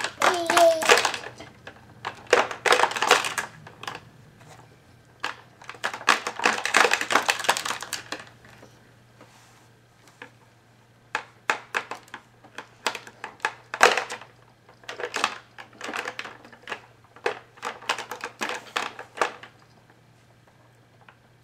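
Plastic toy links and rings rattling and clicking against a baby activity jumper's tray as a toddler handles them: rattling stretches in the first eight seconds, then a run of separate clicks.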